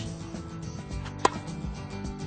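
A tennis ball struck once by a racket on a two-handed backhand, a single sharp pop a little past a second in, over background music.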